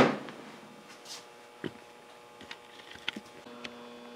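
Homemade ten-stage coil gun firing at 220 volts: a sharp crack right at the start that dies away within about half a second. A few faint clicks follow, and a low steady hum comes in near the end.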